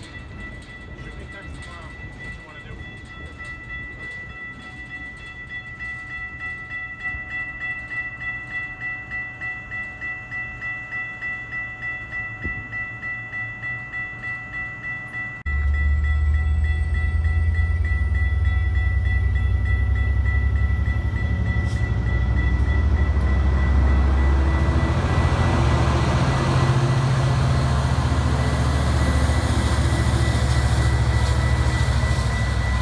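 A slow work train rolls past with a steady high ringing tone that pulses about twice a second. Then a Metra commuter train of bilevel cars passes with a loud, heavy low rumble that grows fuller as its diesel locomotive draws level near the end.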